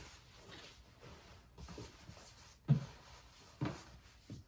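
Faint rustling of a coat's fabric as it is rolled up tightly by hand, with two brief louder sounds a little after halfway and near the end.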